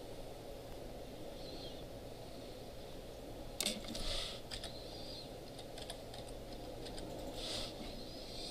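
A few scattered computer keyboard keystrokes, with a cluster of clicks about halfway through and more near the end, over a steady low room hum.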